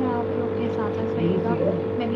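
A steady machine hum holding one even tone throughout, with voices talking faintly in the background.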